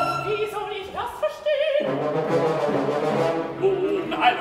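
An opera orchestra playing live: sustained notes that shift in pitch, with a short lull about a second in before a new note comes in.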